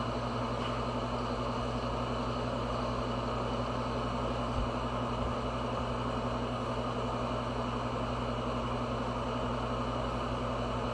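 Steady, unchanging mechanical hum with a low drone and an airy whir, like a fan or household appliance running, with one soft low bump about halfway through.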